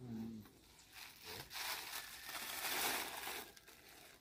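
Rustling and crinkling of a bag being rummaged through by hand, lasting about two seconds, starting about a second in and loudest near the end.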